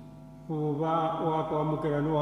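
A man's voice chanting in the liturgy, coming in about half a second in over a faint held musical chord.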